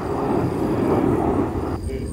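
Breeze buffeting the microphone: a steady rushing noise that stops suddenly near the end.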